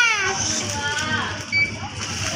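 A young child's high-pitched, drawn-out voice that falls away shortly after the start, followed by quieter voices.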